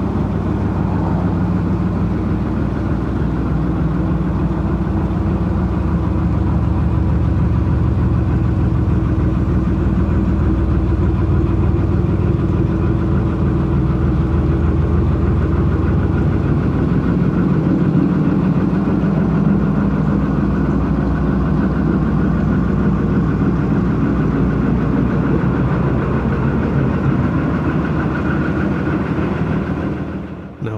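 A narrowboat's diesel engine running steadily at cruising speed, its note shifting slightly about halfway through.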